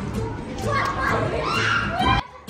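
Children playing and shouting, one child's high voice calling out loudly through the second half.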